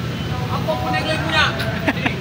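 Indistinct voices talking briefly, over a steady low rumble of street traffic.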